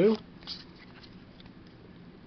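Pokémon trading cards being moved from hand to hand: a few faint papery slides and flicks, the clearest about half a second in.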